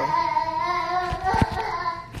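A young child's high-pitched voice held in one long, wavering singsong note. A few low thumps from the phone being handled come about halfway through.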